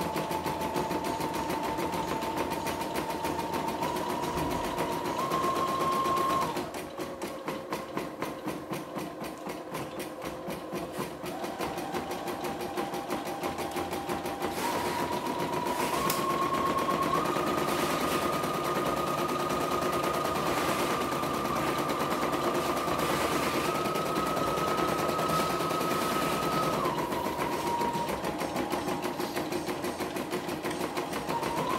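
CNY E960 computerized embroidery machine stitching out a design in its hoop: the needle runs in a rapid even rhythm over a whining motor. The motor's pitch steps up and down as the stitch speed changes. It slows sharply and goes quieter about six seconds in, speeds back up in steps from about eleven seconds, and drops a step near the end.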